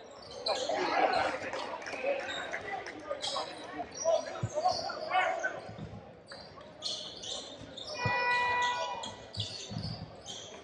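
Indoor basketball game: sneakers squeaking on the hardwood court and a basketball bouncing with a few dull thuds, echoing in a large gym. About eight seconds in, a steady held tone sounds for about a second.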